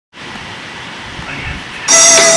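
Steady background hiss of a low-quality recording, with faint low rumbles. Right at the end, loud music with plucked notes cuts in.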